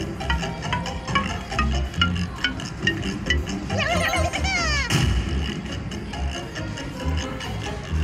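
Rich Little Piggies slot machine game sounds during its pig-wheel bonus: a run of short chiming notes as the wheel pointer turns, a wavering sliding tone about four seconds in, then a sharp knock about five seconds in, over a steady bass beat.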